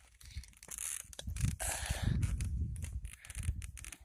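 Low rumbling gusts and irregular crackling and rustling on a handheld phone's microphone, the kind of noise wind and handling make.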